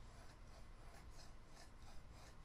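Faint, rhythmic scraping of a steel chisel edge rubbed on a wetted sharpening stone, honing a micro-bevel.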